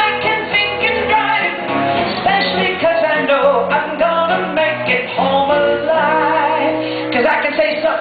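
A singer performing a song live over instrumental backing, the voice moving through sustained sung notes.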